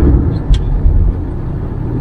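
Low engine and road rumble heard from inside a moving car, with a single sharp click about half a second in; the rumble eases a little over the second half.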